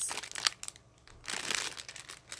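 Clear plastic packet crinkling as it is handled and put down, in two short bouts of rustling with a quieter gap between.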